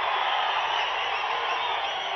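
A large crowd cheering steadily, with individual voices rising and falling through the din.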